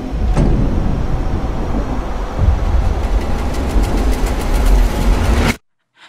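Horror trailer sound design: a loud, deep rumble that builds with a quickening pulse of ticks, then cuts off suddenly into silence about five and a half seconds in.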